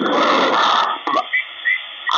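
Malachite DSP SDR V5 receiver's speaker in upper-sideband mode while being tuned around 28.43 MHz. A loud burst of noisy, garbled signal lasts just under a second, then a few short squeals of an off-tune sideband signal.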